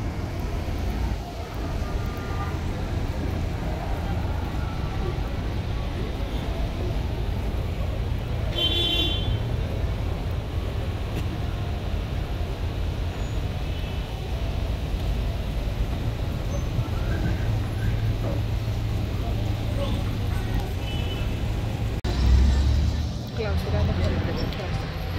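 City street traffic: minibuses, vans and cars running past with a steady low engine rumble. A short vehicle horn toot sounds about nine seconds in, and the rumble swells briefly near the end.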